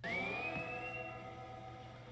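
Musical score from the animated series playing under the scene: a held chord of several steady tones, with a high tone rising over the first second, slowly fading.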